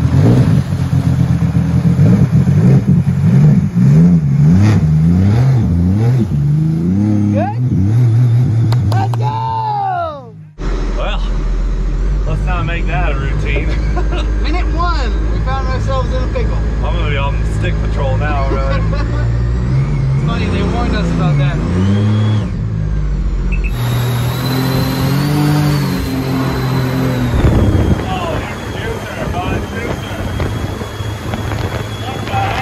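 Supercharged mini jet boat engine running and revving on a river, its pitch rising and falling through the first ten seconds, then a steady deep rumble under the engine sound after a cut.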